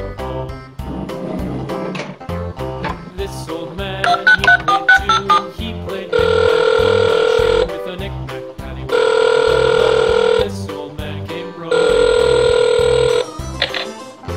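A toy dollhouse wall phone's electronic sounds from its small speaker: a quick run of keypad dialing beeps, then three long electronic ringing tones, each about a second and a half, about a second apart. Background music plays throughout.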